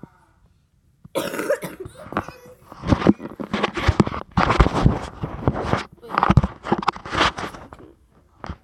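Repeated coughing, starting about a second in after a moment of silence, in a run of short harsh bursts, mixed with close rubbing and thumps of the phone being handled.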